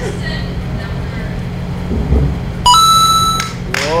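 A short electronic beep about two-thirds of the way in: a tone that steps up in pitch after a moment and lasts under a second, over a low steady hum.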